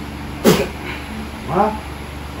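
Two short wordless cries: a sudden one about half a second in, and a second just past the middle that rises and falls in pitch.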